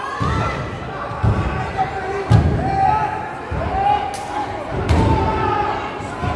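Wrestlers' bodies landing on the wrestling ring's mat: several heavy, booming thuds, the loudest a little over two seconds in, with a few sharp slaps. Shouting voices carry on over them in the hall.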